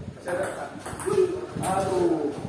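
Table tennis rally: a ball clicking sharply off rackets and table about four times in two seconds, with voices calling out.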